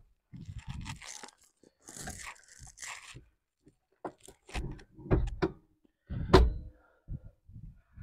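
Rustling and shuffling from a person moving about in a car's driver's seat, followed by several dull thumps, the loudest about six seconds in.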